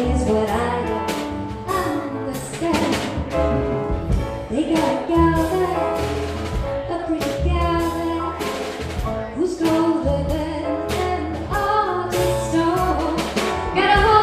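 Live jazz combo playing: a female voice sings over double bass, piano and drums, with repeated cymbal strokes.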